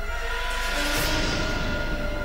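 Tense dramatic background score of held droning tones, with a noisy whoosh swelling up about half a second in and peaking around one second.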